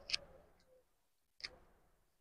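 Light clicks and rubbing as the metal oil pan of a Jack F4 sewing machine is wiped out with a cloth during an oil change. There is a sharp click just after the start with a fading rub after it, then a second click about a second and a half later.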